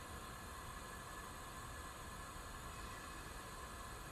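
Faint, steady hiss with a low rumble underneath, the background noise of the launch webcast's audio feed between callouts.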